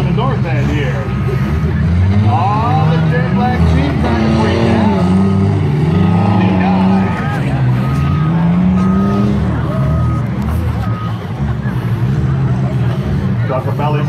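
Several car engines running and revving as the cars drive around the field, their pitches rising and falling over each other. A short beep repeats about once a second through most of it.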